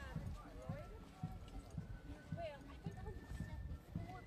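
Footsteps of a marcher walking on a tarmac road, about two steps a second, with people's voices over them.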